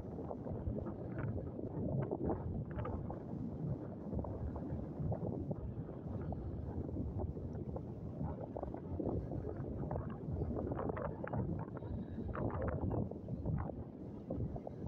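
Wind buffeting the phone's microphone in steady gusts, over choppy lagoon water lapping.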